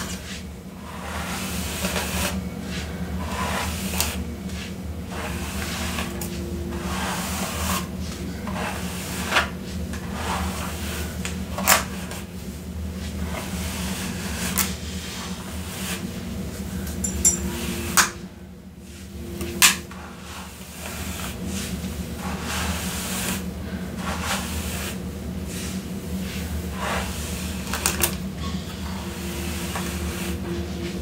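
Hair being brushed close to a sensitive microphone: a continuous scratchy swishing of bristles through hair, with a few sharper clicks and a brief lull partway through, over a low steady hum.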